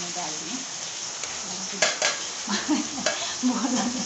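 Steel kitchen utensils being handled, with two sharp metal clinks about two seconds in, over a steady hiss. A voice murmurs briefly near the end.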